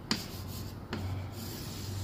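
Chalk scraping across a chalkboard as lines are drawn, with two sharp taps of the chalk against the board, one just after the start and one just before a second in.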